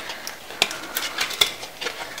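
Hands handling a small paper card and a burlap-and-lace ribbon bow: a few light, irregular clicks and rustles.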